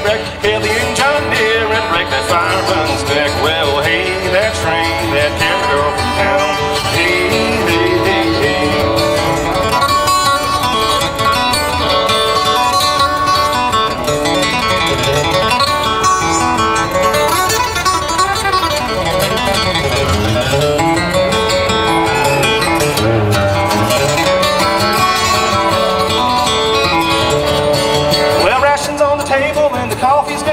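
Solo steel-string acoustic guitar playing an up-tempo bluegrass instrumental break between sung verses.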